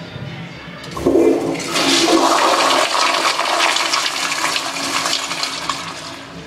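Brand-new Zurn commercial toilet flushing: a click of the flush valve about a second in, then a loud rush of water into the bowl for about five seconds that drops away near the end.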